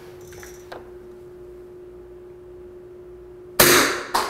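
A Beretta M9A3 CO2 BB pistol fires a single shot near the end: a sharp crack that dies away quickly.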